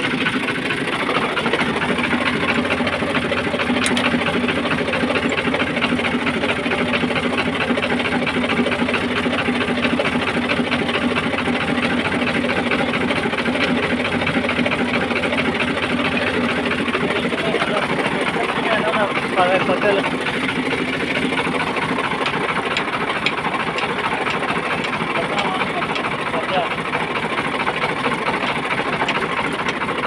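Fiat 480 tractor's three-cylinder diesel engine idling steadily, with a fast, even firing knock.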